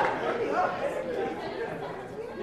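Indistinct chatter of several people talking at once, with no one voice clear.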